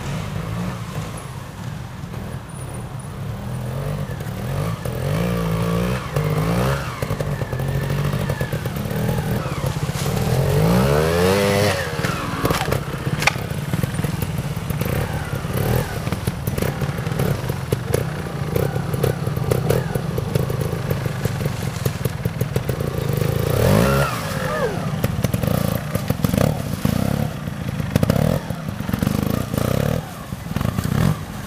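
Trials motorcycle engine running at low revs, with throttle blips that rise and fall in pitch as the bike picks its way over rocks. The biggest revs come about a third of the way in and again past the three-quarter mark.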